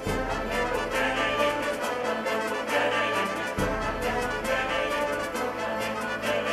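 Symphonic orchestra with prominent brass playing slow, held chords; the bass note changes about three and a half seconds in.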